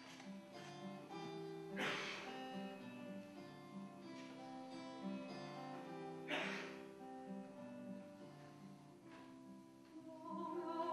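Solo acoustic guitar playing a slow song introduction: picked notes and chords left to ring, with two louder strums about two seconds and six and a half seconds in.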